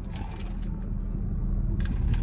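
Car air conditioning running in the closed cabin of a parked car: a steady low rumble, with a faint click near the end.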